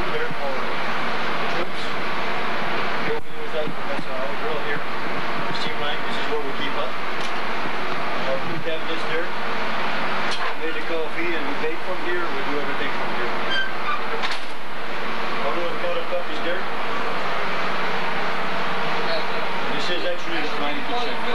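Steady, loud machinery noise inside a military field kitchen truck, with indistinct voices talking under it.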